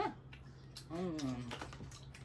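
Close-up eating sounds of someone chewing fruit: a run of quick wet mouth clicks and smacks, with a sharper smack at the start. There is a short voiced hum about a second in.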